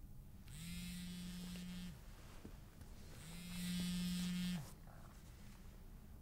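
LG touchscreen mobile phone vibrating with an incoming call: two buzzes of about a second and a half each, the second louder.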